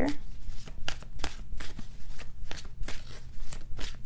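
A deck of tarot cards being shuffled by hand: an irregular run of quick, crisp card flicks and snaps, several a second.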